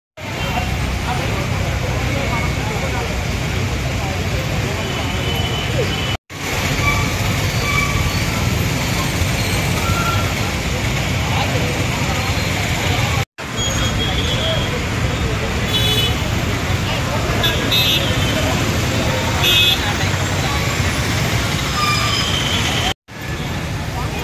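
Busy city street: steady traffic noise with several short vehicle horn toots in the second half, and people's voices in the background. The sound drops out briefly three times.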